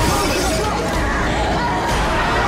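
Glass shattering as a car's side window is smashed in, with a second sharp crash near the end, over a dense, loud trailer soundtrack with a voice in it.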